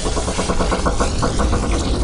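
Electronic sci-fi time-machine sound effect: a deep, steady rumble with a rapid pulsing tone over it, about ten pulses a second.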